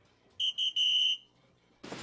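Electronic dartboard machine sounding as a dart lands: two short high beeps and a longer one. Near the end a loud noisy sound effect starts, which goes with the machine's award animation.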